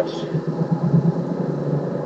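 Car cabin noise while driving at road speed: a steady low drone of engine and tyres heard from inside the car.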